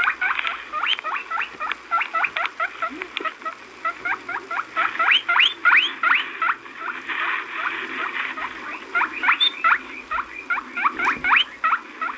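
Recorded rabbit sounds playing back: short high chirps, each rising quickly in pitch, several a second, in runs broken by short pauses.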